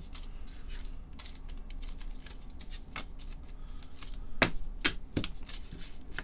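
Trading cards being handled and set down on a tabletop: scattered light clicks and taps, with a few sharper clacks about four and a half to five seconds in.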